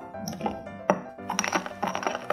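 A metal spatula clinking and scraping against a small glass bowl while stirring pigment powder into glycerin, the taps coming quicker in the second half. Background music plays underneath.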